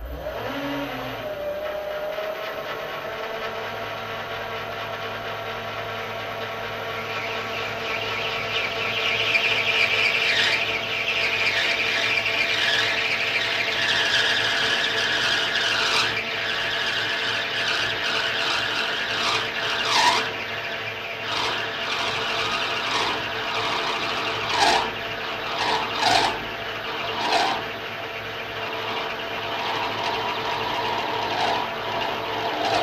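Small metal lathe switching on and running steadily with a gear whine, its chuck spinning a short workpiece. A few seconds later the cutting tool feeds in, adding a rising hissing, scraping cutting noise with a brief squeal, and several sharp clicks in the second half.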